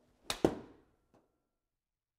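Golf iron swishing through a half swing, then one sharp strike as the clubhead hits the ball off the hitting mat, about half a second in, dying away quickly. A faint knock follows a little later.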